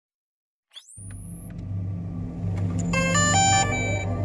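Produced logo-intro sound effect: a quick rising whoosh, then a deep steady rumble with a short run of bright chime-like notes about three seconds in.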